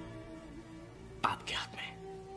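Soft background film score of sustained held notes, with a short breathy, whispered voice a little past the middle.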